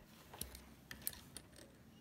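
Very quiet, with four or five faint, short clicks and light rustles as pieced cotton fabric is handled by hand; the sewing machine is not running.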